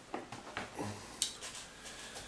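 A few light clicks and taps as a plastic figurine and its packaging are handled and set down, the sharpest a little past a second in.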